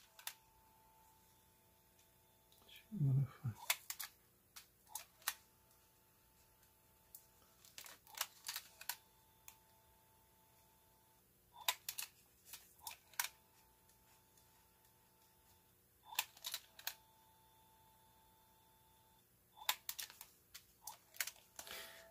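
Small plastic clicks from the control keys of an Aiwa HS-RX650 portable cassette player being pressed, in short clusters every few seconds, with a faint steady tone between some of the presses. Playback is not running properly; the owner suspects the drive belt.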